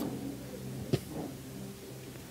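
Faint sustained background music notes over room noise, with a single sharp knock about a second in.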